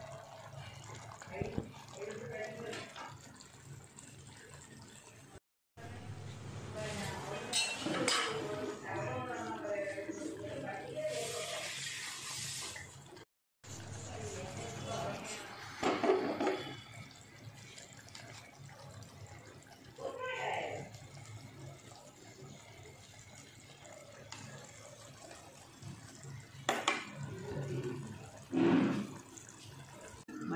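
Fish curry in a clay pot bubbling and sizzling as it simmers down, with indistinct voices talking in the background.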